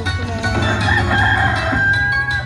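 Video slot machine's rooster-crow sound effect: one long crow from about half a second in, played over the game's music.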